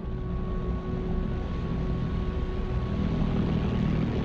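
V-1 flying bomb's pulsejet engine running: a steady low drone.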